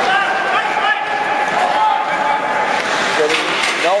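Indoor ice hockey play: skates scraping the ice, with sticks and puck knocking, in a reverberant rink. A steady pitched tone is held for nearly three seconds and then stops.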